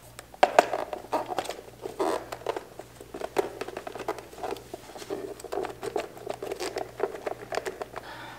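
Ribbed rubber airbox boot being pushed and twisted by hand onto a Honda CB750 carburetor mouth: irregular rubbing and scuffing with many small clicks of rubber against metal and plastic. The boot will not seat fully.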